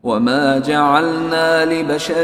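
Quran recitation in Arabic: a single voice chanting melodically, sliding between notes at first and then holding a long steady note.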